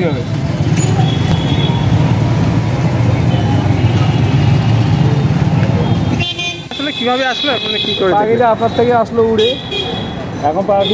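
Busy street noise: a steady low traffic rumble for about six seconds, which then drops away. After that, people's voices and short high-pitched vehicle horn toots come through.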